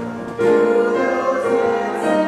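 Church music: singing with instrumental accompaniment, held chords, a louder new chord coming in about half a second in.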